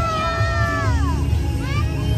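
Parade music from loudspeakers: a bass-heavy backing under long high notes that are held and then slide downward about a second in, with another rising and falling note near the end.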